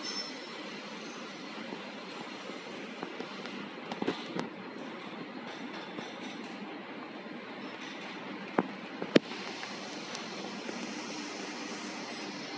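Steady workshop hum and hiss, broken by a few light knocks about four seconds in and two sharp clicks a little after eight and nine seconds, the second one the loudest.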